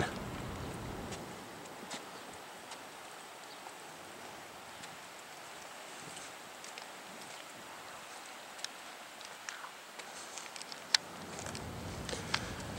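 Quiet outdoor ambience: a faint steady hiss with scattered light clicks and taps, one sharper click near the end.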